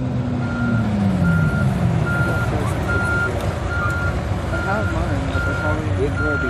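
Wheel loader's reversing alarm beeping steadily, a little more than once a second, over engine noise that drops in pitch during the first couple of seconds.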